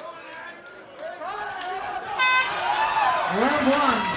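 A short horn blast about two seconds in, signalling the start of the round, with shouting voices from the crowd growing louder after it.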